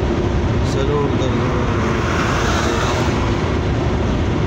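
Steady road and engine noise inside a car's cabin at motorway speed: a dense low rumble of tyres on the road, with a faint voice or song in the background.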